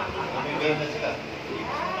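People talking and chattering close by, with a rising, drawn-out call near the end.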